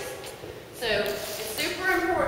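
A woman's voice speaking, quietly at first and louder from about a second in.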